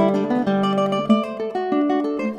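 Solo nylon-string classical guitar playing a lively choro, fingerpicked, with a quick succession of melody notes over held bass notes.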